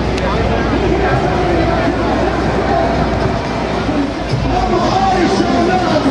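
Busy city street ambience: many people's voices talking over a steady low rumble of traffic.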